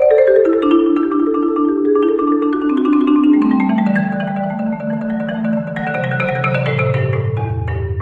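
Yamaha concert marimba played with four mallets: a fast run of notes descending from the middle range into the low register. The low bass notes ring on near the end.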